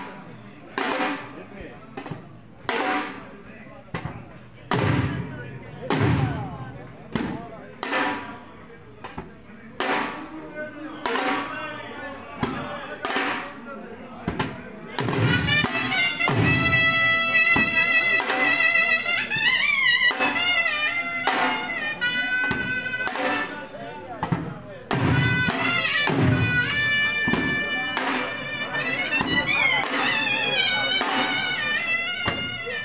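Live dhols beating a slow jhumar rhythm, about one heavy stroke a second. About halfway through a wind instrument joins with a loud, wavering held melody over the drums.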